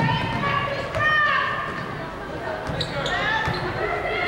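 Basketball bouncing on a hardwood court during half-court play, with voices calling out in a large gym.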